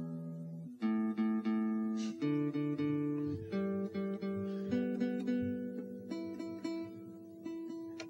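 Acoustic guitar being tuned: strings plucked again and again, single notes and chords ringing on between strikes while the player checks the tuning.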